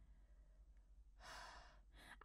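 Near silence, then about a second in a person sighs: one soft breath out lasting under a second.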